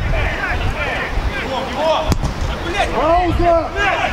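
Players shouting across the pitch, with a single sharp thud of a football being kicked about two seconds in, and a low wind rumble on the microphone.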